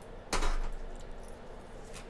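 Tarot cards handled in the hands: a short rustle about a third of a second in, then faint light handling noise.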